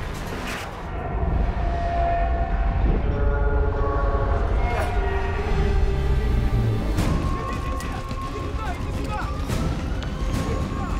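Action-film soundtrack: music with held notes over a deep, steady rumble, broken by a few sharp impacts.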